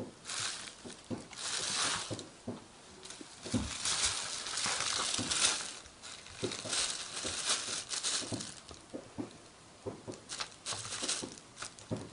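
Thin plastic bag crinkling and rustling in irregular bursts as a cat wrestles and squirms inside it, with a longer, louder stretch of rustling a little before the middle.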